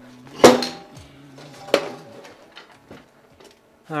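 Two metallic clanks a little over a second apart, the first much louder, each ringing briefly.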